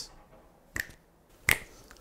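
Two sharp finger snaps, a little under a second apart.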